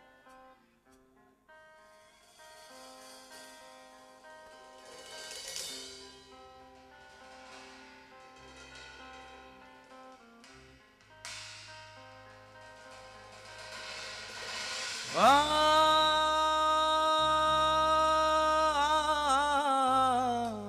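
Live rock band opening a song: quiet single electric guitar notes with light cymbal, low bass notes coming in about halfway. About fifteen seconds in, a loud long held note slides up into pitch, holds, and wavers near the end.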